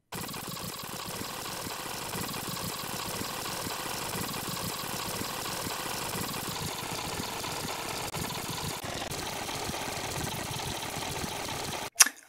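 Fast-forward sound effect: a steady, dense machine-like whirring that starts abruptly and cuts off abruptly near the end.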